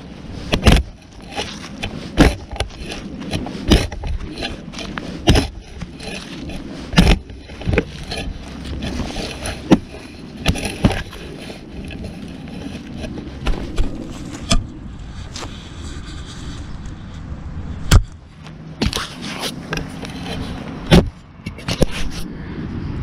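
A Nomad RootSlayer digging shovel cutting a plug in lawn soil and roots, picked up through the camera mounted on the shovel. A dozen or so sharp jabs of the blade come at uneven intervals, with scraping and crunching of soil and leaves between them.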